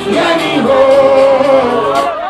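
Loud music with a man singing live into a handheld microphone, holding one long note through the middle.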